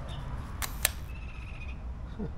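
Shutter of an Olympus E500 digital SLR firing once: two sharp clicks about a fifth of a second apart as the mirror and shutter cycle.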